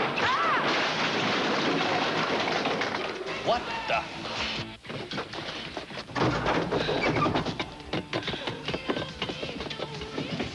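Soundtrack of a tense drama scene: music under a loud, even rushing noise that breaks off sharply about five seconds in, followed by a run of scattered knocks and clatter.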